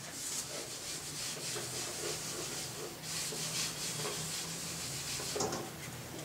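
Felt duster wiping marker writing off a whiteboard: a steady hiss of rubbing strokes that swells and fades.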